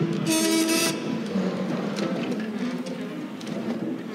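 A crowd rising from banquet chairs. A chair scrapes the wooden floor with a short squeal about half a second long near the start, followed by shuffling and scattered light knocks.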